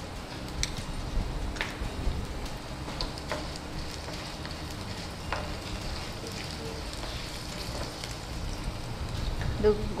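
Tempering for lemon rice (peanuts, green chillies and curry leaves) sizzling steadily in oil in a non-stick kadai. A wooden spatula stirs and scrapes through it, knocking against the pan several times.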